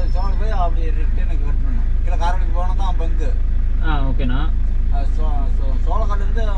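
Mahindra Scorpio engine idling with a steady low hum, heard from inside the cabin, with voices talking at intervals over it.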